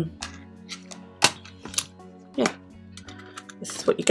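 A small hinged metal watercolour paint tin being handled and opened: about half a dozen sharp clicks and light taps, spread out, with the clearest one a little over a second in.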